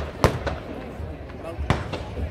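Two sharp firecracker bangs about a second and a half apart, over a murmur of crowd voices.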